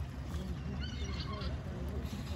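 Steady low drone of an approaching passenger ferry's diesel engine, with a few short high gliding gull calls about a second in.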